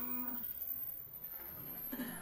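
Baby macaque crying, with one short call right at the start.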